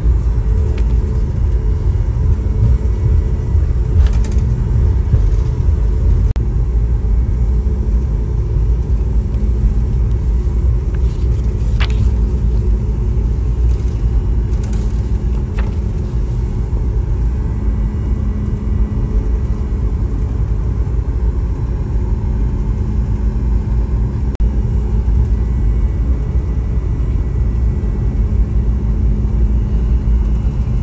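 Steady low rumble of a Boeing 737-8 airliner cabin, with a constant hum underneath. A few brief paper rustles and clicks stand out as the safety card and menu pages are handled, the sharpest about twelve seconds in.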